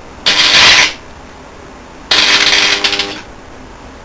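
Damaged RF welder high-voltage transformer powered up twice briefly, each time giving a loud electrical crackle about a second long. The second run carries a steady buzzing hum under the crackle. The arcing comes from a shorted, burnt-out secondary winding.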